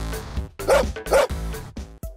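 Two short dog barks, about half a second apart, over an upbeat electronic jingle with a steady beat; the jingle stops at the very end.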